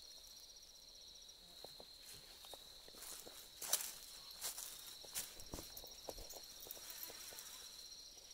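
Faint outdoor sound of insects trilling steadily at a high pitch, with footsteps crunching through dry fallen leaves. A sharp knock comes a little before the middle, followed by a couple of softer ones.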